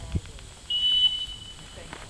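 A single long blast on a dog-handler's whistle: one steady high tone lasting under a second, starting about a third of the way in. It is the stop whistle used to halt a retriever on a water blind so it can be handled.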